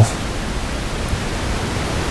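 Steady background hiss with no other sound standing out.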